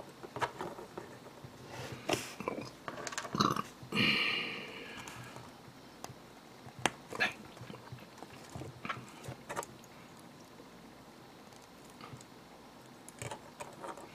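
Small plastic model-kit frame parts being handled and clicked together, with scattered short clicks and ticks. A brief pitched sound stands out about four seconds in.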